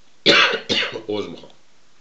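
A man coughs twice in quick succession, the two coughs about half a second apart, then says a short word.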